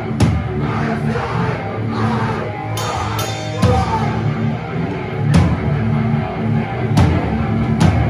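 Live heavy rock band playing loud: distorted guitar, bass and drums, with several crash cymbal hits cutting through.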